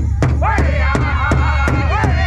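Powwow drum group singing in high, gliding voices over a large bass drum struck in unison at a steady beat of nearly three strokes a second. The singing drops out briefly at the start and comes back in within half a second.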